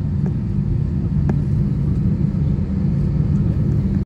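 Cabin noise of an Airbus A320-232 taxiing, its IAE V2500 engines at idle: a steady low rumble heard through the fuselage, with a single faint knock a little over a second in.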